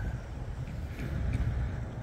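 Outdoor roadside ambience: a low, steady rumble with faint noise above it.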